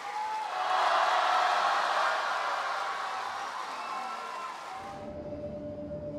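Crowd of spectators applauding. The applause swells about half a second in, then dies away over about four seconds, while faint background music continues underneath and rises again near the end.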